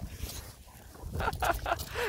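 French bulldogs play-chasing, with a few short breathy snorts a little past a second in, over a low rumble.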